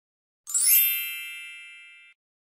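A single bright chime rings out about half a second in after total silence, then fades away steadily. It is an edited-in ding sound effect marking a transition.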